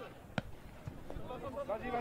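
Players' voices calling across a football pitch, with one sharp kick of the ball about half a second in.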